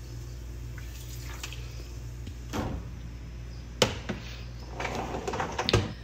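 An open dishwasher being handled: a few sharp knocks and rattles of its tub and wire rack, the loudest just before four seconds in, over a steady low hum.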